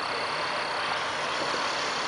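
Steady outdoor background hiss with a faint, thin high-pitched tone running through it; no bang or burst from the dust cannon is heard.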